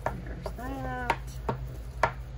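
Hands pressing and creasing folded paper on a cutting mat, giving a handful of sharp taps. About half a second in, a woman gives a short hummed 'mm' lasting about half a second.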